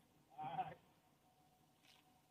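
A single brief vocal sound from a person, like a short word or grunt, about half a second in; otherwise near-quiet background.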